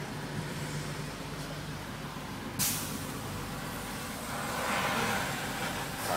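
Street traffic with a sudden sharp hiss of released air about two and a half seconds in, typical of a heavy vehicle's air brakes, then a rising rush of noise near the end.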